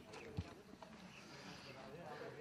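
Faint background voices of people talking, with one short low thump about half a second in and a few light clicks.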